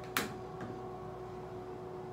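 A single sharp plastic click just after the start as the micellar-water bottle is handled, then a steady low hum.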